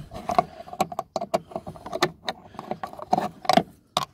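An L-shaped T25 Torx key working a screw out of a car door's plastic trim handle: an irregular run of small metallic clicks and scrapes as the key turns and shifts in the screw head, the loudest about three and a half seconds in.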